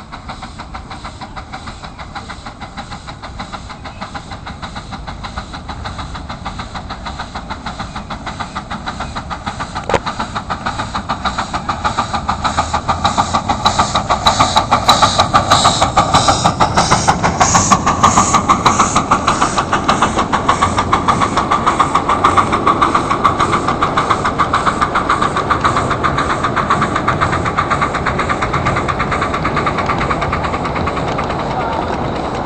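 A ridable live-steam 4-6-2 Pacific locomotive and its train approaching and running past, with a fast, even beat of exhaust chuffs and wheels on the rails. The sound swells as it comes closer and stays loud through the second half.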